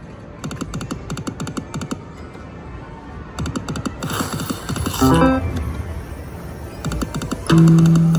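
AGS Cluck Cluck Cash video slot machine running through two losing spins. Rapid electronic ticking plays while the reels spin, then a short run of stepped electronic notes as they stop, and a loud held low tone comes near the end.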